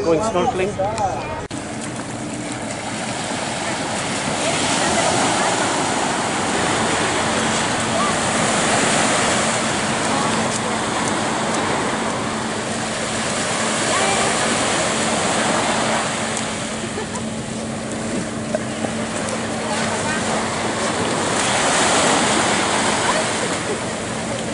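Small waves washing onto a sandy beach, the hiss swelling and fading every few seconds, with a faint low steady hum underneath.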